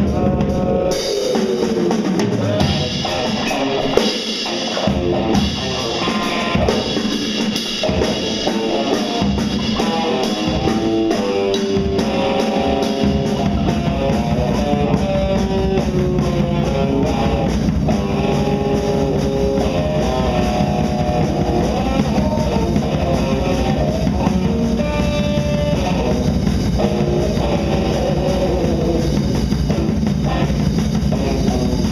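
Electric guitar and drum kit playing experimental blues-rock. The guitar holds and bends single notes over the drums, and the drums grow fuller and steadier about a dozen seconds in.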